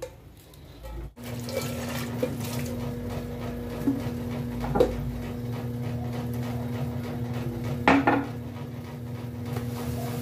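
Tap water running steadily into the sink and an aluminium pan, with a steady hum in the pipes, starting about a second in. A few sharp knocks of the pan come through.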